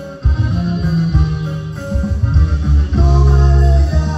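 A live band playing dance music, with a loud, heavy bass line and guitar.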